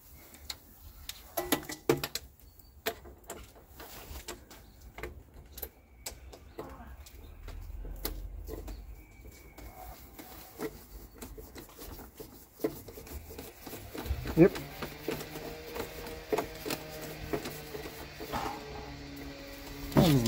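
Scattered small metallic clicks and taps as bolts and tools are handled and bolts are threaded in by hand in a car engine bay. A faint low steady hum with a few tones joins for the last few seconds.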